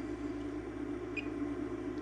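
Steady low hum of room tone, with one faint, short high-pitched blip about a second in.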